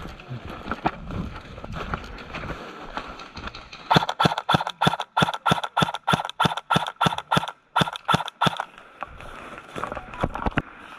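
Footsteps running over dry fallen leaves, an even series of crunching steps, about four a second, starting about four seconds in and stopping near the end.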